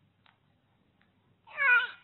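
Infant's short coo about one and a half seconds in, a single pitched call that falls slightly, preceded by a couple of faint clicks.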